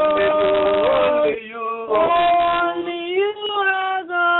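Several voices singing a worship chorus together in long, held notes that glide from pitch to pitch, heard over a telephone line with a thin, narrow sound.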